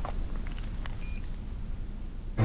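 Low, steady room hum with a few faint clicks, and one short electronic beep about a second in.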